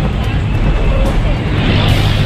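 Busy street noise: a steady low rumble of vehicle engines, with indistinct voices of people around.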